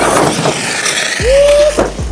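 Arrma Kraton 6S RC monster truck running on dirt: a rush of motor and tyre noise, then a short steady whine about a second in and a sharp knock near the end.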